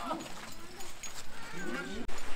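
Shouted calls of mikoshi bearers carrying a portable shrine. The calls are short and broken, with a rising call about one and a half seconds in.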